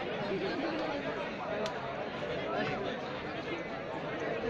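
Large audience chattering, many voices talking over one another at once with no one voice standing out.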